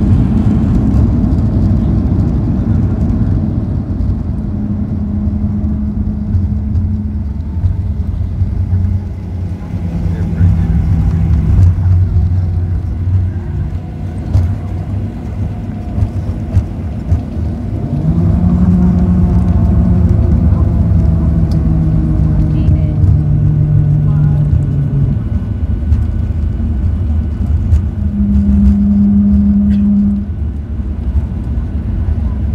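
Cabin noise of a Boeing 737-800 taxiing after landing: a loud, steady low rumble from its CFM56 engines and rolling wheels, with droning hums that rise and fade every few seconds.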